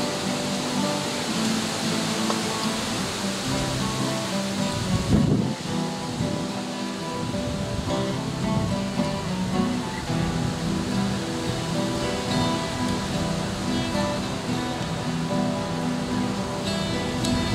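A large group of acoustic guitars playing a folk tune together. Each chord sounds as a full, steady wash of strummed notes. About five seconds in there is a brief low bump.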